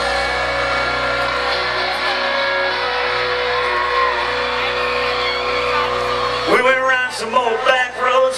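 Live country band heard through the amphitheatre's PA from within the crowd, holding a sustained chord with steady bass. About six and a half seconds in, the sound changes sharply: a voice comes in over the band, with shouts from the crowd.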